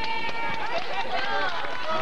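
Several voices talking over one another, a crowd chattering in a gymnasium.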